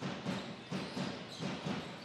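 Supporters' drum in a sports hall beating a steady rhythm of low thuds, over the general noise of the crowd.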